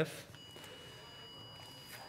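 Faint, steady high-pitched beep of an angiography X-ray system's exposure warning tone, sounding while the X-ray is on to acquire a roadmap image. It starts about a third of a second in and holds steady over a low room hum.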